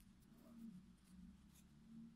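Near silence: a faint rustle of yarn being handled and pulled through crocheted fabric, over a low steady hum.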